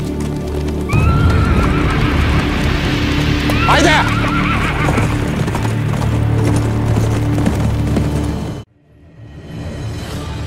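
Horses set off at a gallop over dirt, their hoofbeats under loud dramatic music, with a horse neighing about four seconds in. The sound cuts off suddenly near the end.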